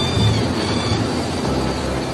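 Excavator engine running with a steady low rumble.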